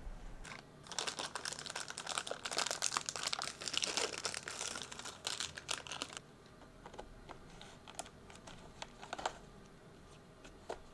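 Plastic coffee packet crinkling as it is opened and handled, a dense crackle of small clicks for about six seconds, then only a few scattered clicks.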